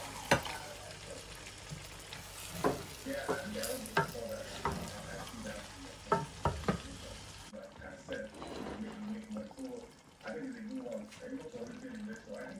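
A spoon stirring thick egusi soup in a metal pot, with a scattering of sharp knocks of the spoon against the pot over a steady sizzling hiss of the pot on the heat. The hiss cuts off suddenly about seven and a half seconds in, leaving a quieter stretch.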